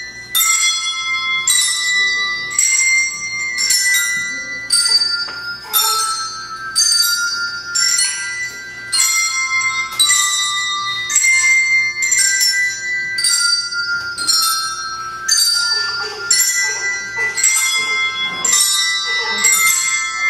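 Small bells rung by a children's group, playing a melody one note at a time, about one note every 0.7 seconds, each note ringing on into the next.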